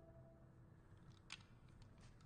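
Near silence: faint held music notes fade out, and there is one sharp click just over a second in, then a few lighter clicks near the end, from a pistol being handled.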